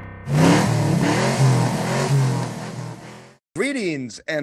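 Car engine revving hard, its pitch rising and falling several times, then dying away near the end.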